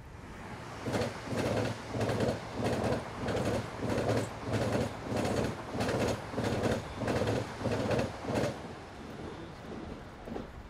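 Train wheels clattering in an even rhythm over rail joints, a little under two beats a second. The clatter builds up about a second in and fades away near the end.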